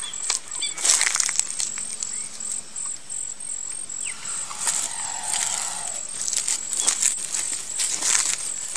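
Outdoor forest ambience: irregular rustling and crackling, a steady high pulsing tone, and a short bird call about four seconds in.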